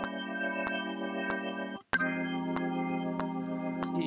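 A GarageBand Vintage B3 jazz organ software instrument holds a chord over a light drum tick on every beat, about one and a half a second. Just short of two seconds in, the sound cuts out for an instant and comes back with a changed organ tone as a drawbar is moved.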